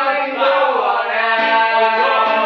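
Men singing together in long held notes, chant-style, over a strummed acoustic guitar.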